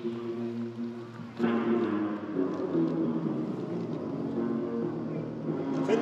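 Electric guitar sounding sustained chords through the stage PA at a sound check, ringing in a large empty auditorium; a new, louder chord comes in about a second and a half in.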